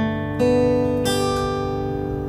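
Acoustic guitar picking single notes over a G chord: three notes one after another, the third string at the second fret, the open second string, then the first string at the third fret, each left ringing.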